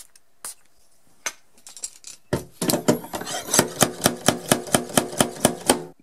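Rapid, even mechanical clicking from a hand tool of a glue-pull dent repair kit, about six clicks a second over a steady hum. It starts about two seconds in, after a few single clicks.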